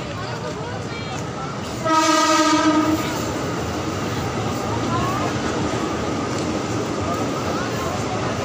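A single steady horn blast, about a second long, starting about two seconds in, over the continuous chatter of a crowd.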